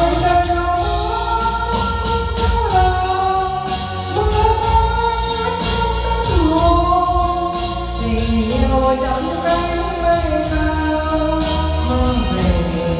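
A woman singing karaoke into a wireless microphone, holding long sliding notes over a backing track with a steady bass line. Her voice and the music are played loud through a Weeworld SH1800 home karaoke speaker and subwoofer system.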